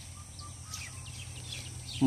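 Outdoor background noise with a steady low hum, and a few faint short bird chirps a little under a second in.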